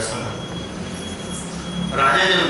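A pause in speech filled by steady background noise through the microphone: a low hum that swells slightly in the second half, and a thin, steady high tone.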